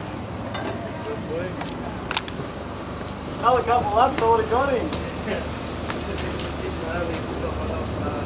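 Indistinct voices of people talking, with one voice louder for about a second and a half from around three and a half seconds in, over a low steady hum.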